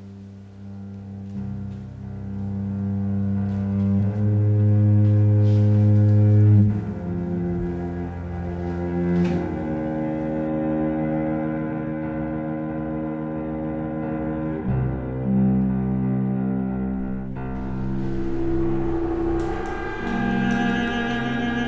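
Background music of slow, held low string notes that change pitch every few seconds, loudest a few seconds in.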